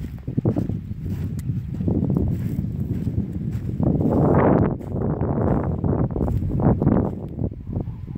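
Wind buffeting the phone's microphone: a gusty low rumble that swells loudest about halfway through and again near the end.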